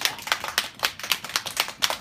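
A group of young children clapping together in a steady rhythm, about four claps a second.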